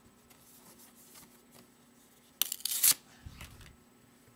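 Pokémon vending card sheets being handled: a few faint rustles, then a sharp papery rustle lasting about half a second a little past halfway, followed by a soft low bump.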